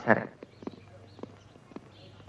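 A voice trails off at the start, then a few light, sharp taps come about every half second against a quiet background.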